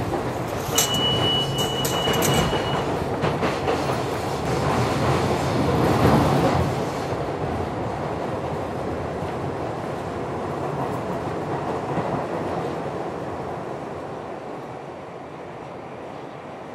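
New York City subway train running, a steady rumble and clatter of the car in motion that eases off toward the end. Near the start a high, thin steady tone lasts about two seconds.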